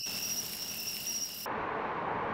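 Night insects calling with steady, high, thin tones. About one and a half seconds in they cut off abruptly and give way to a steady low hum of city traffic.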